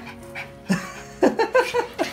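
Small dog giving about four short yips in quick succession about halfway through, over steady background music.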